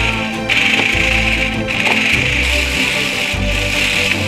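Background music with a toy remote-control stunt car's small electric motors and wheels running across a tabletop. The car's hiss starts about half a second in and cuts out briefly once.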